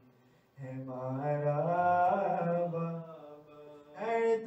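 A man chanting a marsiya, a mourning elegy, solo into a microphone: after a brief pause, one long melodic line that rises and then falls in pitch, trailing off quieter near the end.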